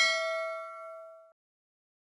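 A single bell-like metallic ding: one strike that rings with several overtones, fades, and cuts off suddenly a little over a second in.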